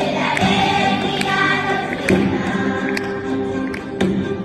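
Children's choir singing a Spanish Christmas carol (villancico) to acoustic guitar accompaniment, with sharp percussion taps through the singing.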